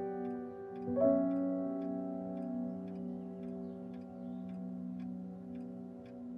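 Soft background score: a chord of sustained keyboard notes over a steady low drone, with a new chord struck about a second in and a faint, regular ticking pulse.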